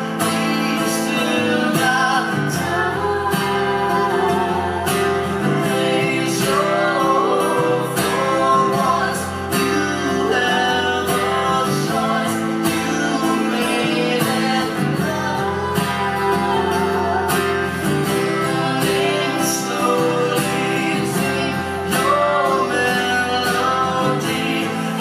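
Live acoustic guitar strummed steadily under singing voices, a man and a woman together.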